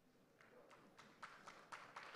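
Near silence, then faint, scattered hand claps starting about half a second in and slowly building, as an audience begins to applaud.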